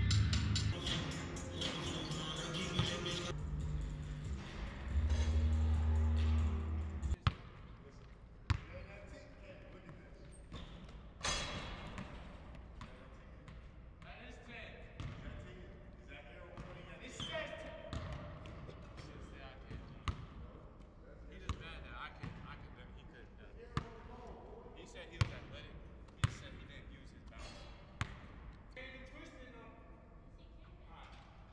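Music with a heavy bass beat that cuts off suddenly about seven seconds in, followed by a basketball bouncing on a hardwood gym floor: single sharp bounces spaced a second or more apart.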